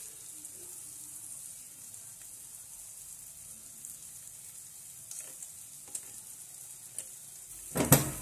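Onion rings sizzling steadily as they fry in melted margarine in a saucepan. A few faint ticks come in the second half, and a louder knock just before the end.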